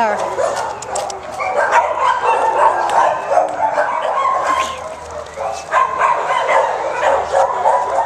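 A dog making short high yips and whines through the whole stretch, mixed with a person's high voice and many sharp clicks and scuffs.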